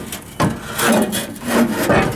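Scraping and rubbing in about five short strokes over two seconds, from gloved hands and parts working against the underside of the truck.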